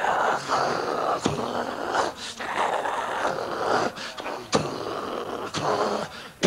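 A person's wordless vocal sounds, broken by several sharp clicks.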